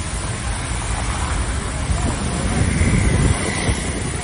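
Low rumble of a vehicle driving along a muddy street, swelling louder about two and a half seconds in, with voices faintly behind it.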